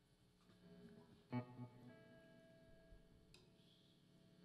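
Faint plucked string-instrument notes: one note plucked about a second in, then a few notes left ringing, a quiet noodle on the stage guitars between songs.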